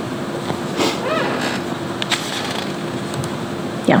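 A pause in the talk: steady room noise with a faint low hum, a faint murmur about a second in and a few small clicks, then a short spoken 'yeah' at the very end.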